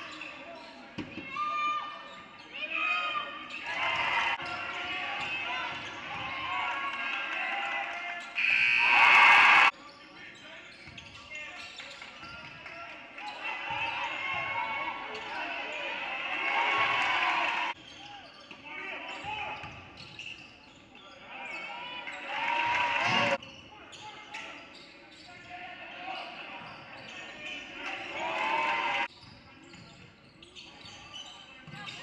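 Indoor basketball game sound in a gymnasium: a ball bouncing on the hardwood floor, sneakers squeaking, and players' and spectators' voices ringing in the hall. A loud burst of about a second comes about nine seconds in, and the level jumps abruptly several times where clips are cut together.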